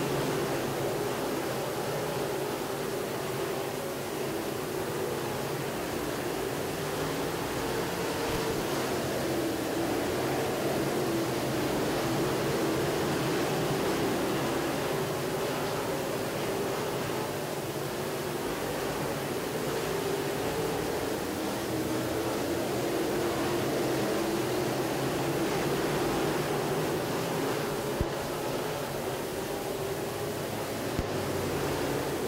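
A pack of dirt late model race cars running laps on a dirt oval. Their engines make a steady drone that swells and fades slowly as the cars circle, with one sharp click near the end.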